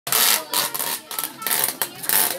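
Clear adhesive tape pulled off its roll in a series of short, rasping rips, about five in two seconds.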